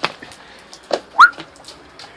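One short, sharp whistle about a second in that rises quickly in pitch and then holds briefly, with a soft knock at the start and a dull thump just before it.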